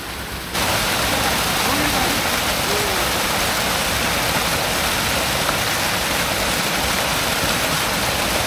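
Steady rushing of running water, starting suddenly about half a second in and holding evenly throughout.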